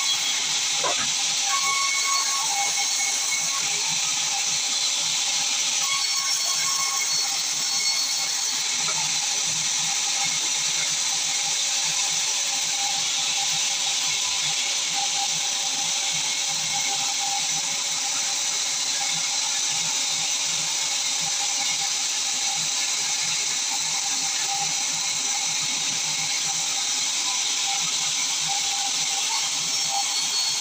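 Large vertical band saw running and cutting through a log: a steady, loud high hiss with a faint constant whine underneath.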